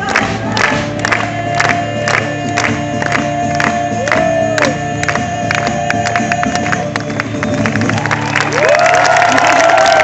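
Live acoustic performance through a PA: a woman singing long held notes over acoustic guitar, with the crowd clapping along in a steady beat. Near the end the sound swells as crowd voices join in.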